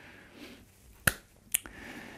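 Two short, sharp clicks about half a second apart, with faint low-level noise around them.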